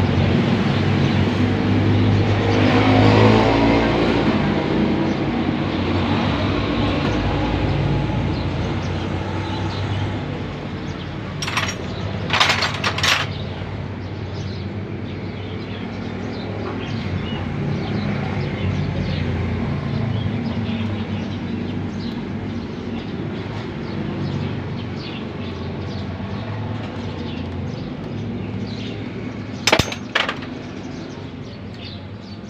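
Steady background street-traffic noise, swelling louder about three seconds in as a vehicle passes. A few short metallic clicks of hand tools come around twelve seconds in and again near the end.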